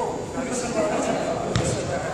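Indistinct chatter of voices in a gym, with one sharp smack of a volleyball about one and a half seconds in.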